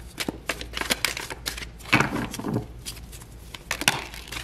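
A deck of round tarot cards being shuffled by hand: a quick run of soft card clicks and riffles. Near the end there is a sharper slap as two cards jump out of the deck onto the wooden table.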